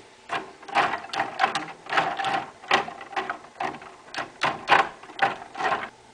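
A rapid, irregular run of small clicks and knocks, about four a second.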